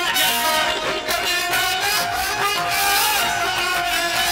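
Live qawwali music: a harmonium playing held notes under male voices singing into microphones.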